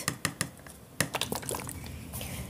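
A few light clicks and taps of plastic paint cups and containers being handled and set down: a quick run of small clicks in the first half second, then a sharper click about a second in.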